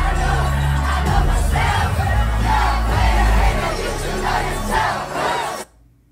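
A packed club crowd yelling over loud dance music with heavy bass, in a large reverberant room. The sound cuts off abruptly near the end.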